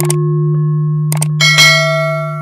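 Subscribe-button animation sound effects: mouse-style clicks over a held low tone, then a bright bell chime about one and a half seconds in that rings on, the notification-bell sound.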